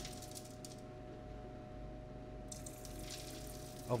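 Water from a small pump's tube trickling over a wooden board and splashing into a bucket of iced water, with a steady hum underneath. A higher hiss joins in from about halfway through.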